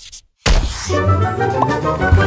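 Scratchy pen-writing sound effect that stops, then a heavy thump about half a second in as a music sting with sustained chords begins.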